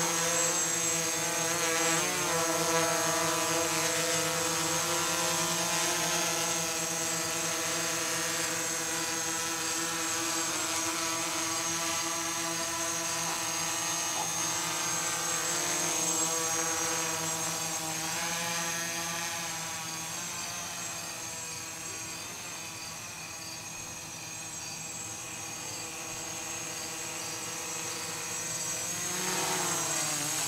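Gaui 330X electric quadcopter in flight, its motors and propellers giving a steady, many-toned whine. It grows fainter in the second half and louder again near the end.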